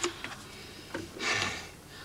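Light clicks of a drinking glass being handled and a short breathy sound as a person drinks from it.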